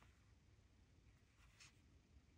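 Near silence, with one faint scratch of a fine-tip Micron pen drawing a short stroke on a small paper tile about a second and a half in.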